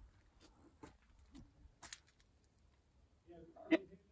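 Near silence with a few faint, short clicks in the first half, then a brief faint voice near the end.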